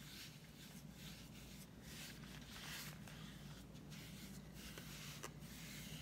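Faint swishing of a paintbrush drawing long strokes of acrylic paint over a gourd's hard shell, a series of soft strokes roughly one a second, over a low steady hum.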